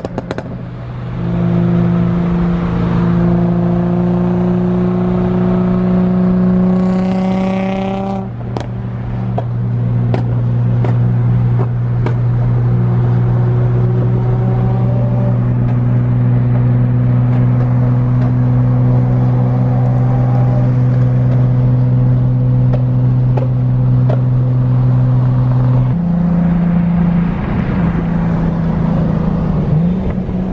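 Car engine and exhaust heard from inside a moving car: the engine note climbs steadily as the car accelerates over the first several seconds, then settles into a steady drone at cruising speed, with a change in the note near the end.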